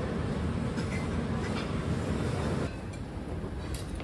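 Restaurant background noise: a steady low rumble that drops in level about two-thirds of the way through, with one light clink near the end.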